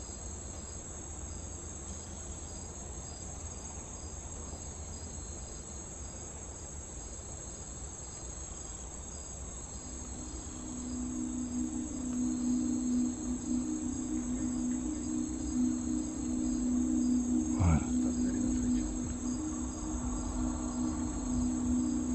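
Night insects, crickets, chirring steadily in a high, continuous band, with one pulsing chirp beneath it. About halfway through, a low steady music drone comes in and grows louder.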